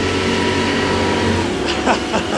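The 44-foot motor lifeboat's diesel engines running steadily under way, a low drone over a rush of wind and water, with a brief shout near the end.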